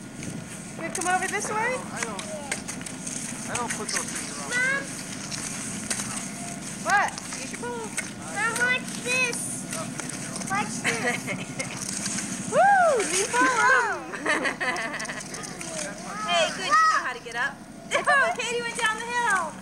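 High-pitched voices chattering and calling out in short bursts, with a faint steady low hum underneath.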